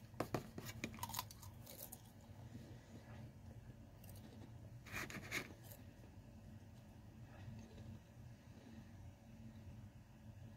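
Faint crunching as a Pringles potato crisp is bitten and chewed: a quick run of sharp cracks in the first two seconds, then quieter chewing with one brief louder sound about five seconds in.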